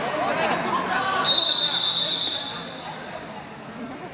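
Referee's whistle blown in one long blast about a second in, signalling a pin (fall) that ends the wrestling match. It starts abruptly and fades away over a second or so, echoing in a gym.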